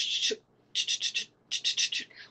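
A woman's mouth-made imitation of a rotary phone being dialled. There is a short hiss, then two quick runs of about four hissy clicks each.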